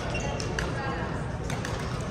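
Badminton hall sound: a few sharp racket hits on shuttlecocks and short shoe squeaks on the court floor, over background chatter from players and spectators.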